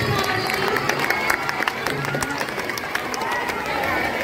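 A crowd of children and adults talking all at once, with scattered sharp hand claps that are thickest in the first half and thin out.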